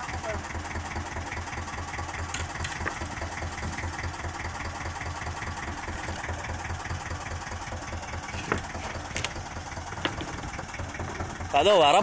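A fishing boat's engine idling with a steady low throb. A loud shout cuts in near the end.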